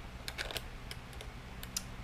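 Light, irregular clicks and taps of plastic GoPro mount pieces being handled and fitted together by hand, about half a dozen small clicks.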